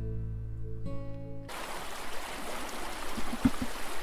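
Acoustic guitar music that cuts off abruptly about a second and a half in, followed by the steady rush of a shallow river flowing over a rock bed.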